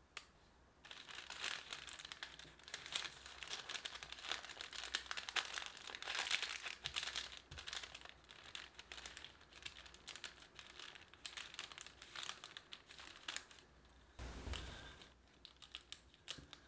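Wooden rolling pin rolling crumbly tart dough under parchment paper: the paper crinkles and crackles steadily with many small ticks as the dough is pressed flat. A brief, duller rustle comes near the end.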